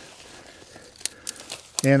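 Faint crackling and rustling of dry, dead perennial stems and leaves being gathered by hand, with a few sharp crackles from about a second in.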